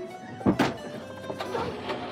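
A car door of a small old Renault 4 slamming shut once, about half a second in, over background music.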